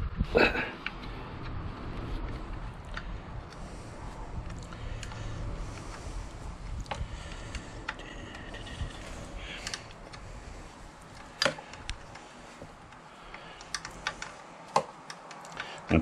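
Small, irregular metallic clicks and taps of a hand tool loosening and backing out the clamp bolt on a motorcycle's gear selector linkage. A short laugh comes near the start.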